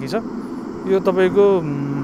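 A man speaking in an interview, dwelling on drawn-out vowels between quicker bits of speech.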